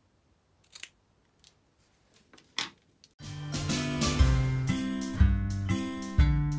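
Small scissors snipping a paper strip a few times, as short, sharp clicks. About three seconds in, background music with a steady beat starts and carries on as the loudest sound.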